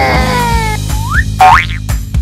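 Children's background music with cartoon sound effects over it: a falling-pitch tone in the first part, then two quick rising whistle-like glides, the second the loudest, about one and a half seconds in.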